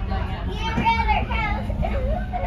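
A high-pitched voice calling out over the steady low rumble of a moving Caltrain commuter train.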